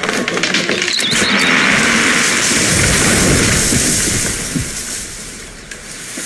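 A large fir tree coming down: a rushing swell of branches through the air that peaks with a low crash about halfway through and dies away.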